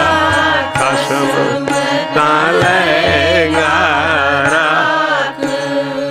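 Sikh kirtan: a man singing a Gurbani shabad in long, ornamented phrases whose pitch bends and wavers, over a steady held drone.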